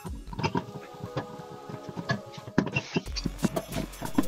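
Background music with a steady beat.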